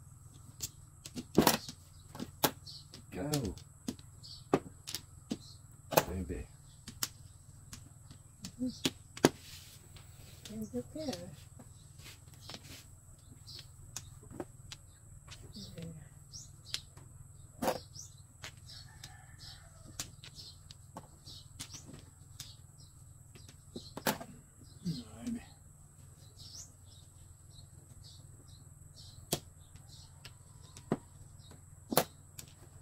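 Mahjong tiles clacking on a felt-topped table as players draw and discard, sharp irregular clicks throughout, over a steady low hum.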